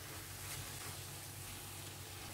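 Faint, steady sizzling of cooked chana dal and coconut paste frying in a nonstick pan as it is stirred with a spatula.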